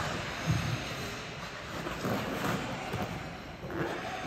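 Figure skate blades gliding and scraping on ice, with a few stronger pushes, over steady indoor-rink noise.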